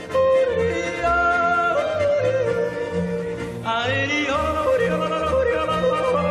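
A male singer yodeling a Swiss yodel over a folk band with regular alternating bass notes. A high, wavering yodel phrase comes in about three and a half seconds in.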